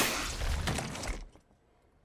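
A crash of something shattering, its clatter dying away over about a second, then near silence.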